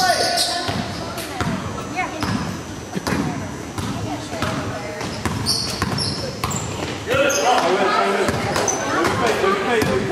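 Gym sound of a youth basketball game: a basketball dribbled on the hardwood floor, short sneaker squeaks, and spectators' voices that grow louder and busier about seven seconds in, with echo from the hall.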